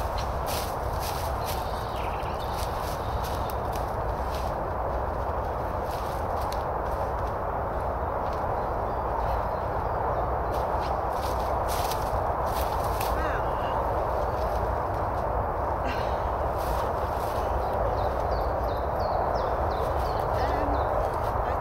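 Footsteps on dry leaf litter, a scattered run of irregular crackling steps over a steady background hiss.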